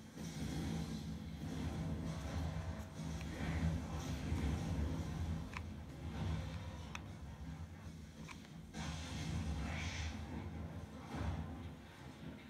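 Close handling noise from rolling felt and working a mini hot glue gun, a low steady hum underneath, with a few faint sharp clicks scattered through.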